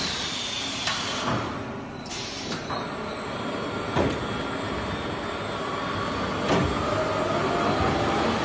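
Automatic paper drum winding machine running: a steady mechanical noise broken by several sharp clacks, with a faint whine rising in pitch over the last couple of seconds.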